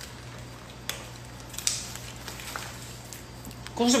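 Quiet room with a steady low hum and a few faint, isolated clicks from handling food and utensils at a table; a voice starts just at the end.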